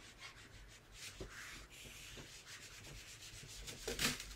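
A whiteboard eraser rubbing across a whiteboard, wiping off written words in faint, uneven strokes.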